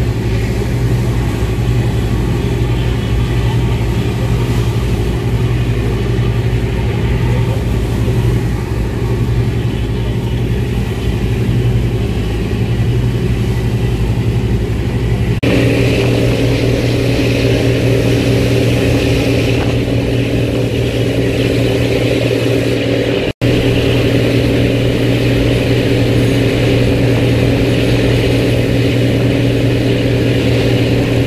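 A boat's engine droning steadily, with the rush of its churning wake. The tone of the drone shifts abruptly about halfway through, and the sound drops out for an instant about two-thirds through.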